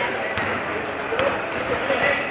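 Basketball bouncing on an indoor court, a few sharp knocks, under people talking and calling in a reverberant sports hall.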